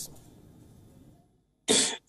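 A short, loud, breathy vocal sound from a man near the end, just before he starts to speak, after about a second of faint background hiss.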